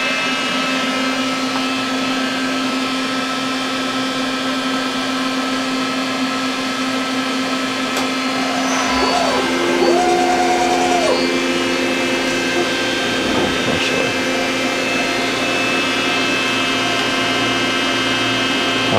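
CNC vertical milling center running a program, its spindle and drives giving a steady whine while a ground-to-taper carbide end mill works the bolt-pattern holes in a metal index plate. Near the middle a second tone rises, holds for about a second and drops back.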